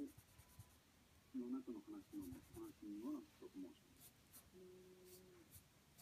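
Graphite pencil drawing on paper: faint, short scratching strokes, several in the second half, under a quiet voice talking in the background.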